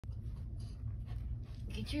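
A small dog's paws scrabbling on a quilted fabric dog car seat as it climbs in: a run of short scratchy rustles over a low steady rumble, with a voice starting near the end.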